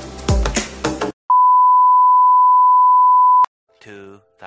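Background electronic music that cuts off about a second in, followed by a loud edited-in beep: one steady high pure tone held for about two seconds, then cut off sharply.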